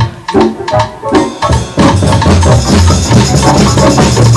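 A few separate percussion strikes, then a live rock band comes in about two seconds in: drum kit, bass and electric guitar playing together at full level.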